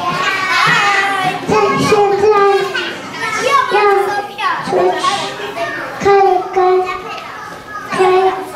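A group of young children's voices chattering and calling out together, some drawn out into long held notes.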